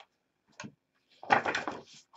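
Faint small handling sounds: a light click, a short knock about half a second in, and a brief rustle near the end, from a rinsed paintbrush and painting tools being handled.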